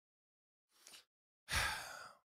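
A pause, then about one and a half seconds in a man draws a quick, audible breath close to the microphone before speaking.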